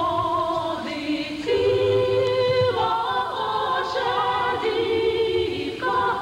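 A choir singing long held notes that step to a new pitch every second or so.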